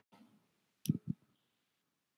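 A brief click with two short low knocks, about a second in, set in otherwise dead silence.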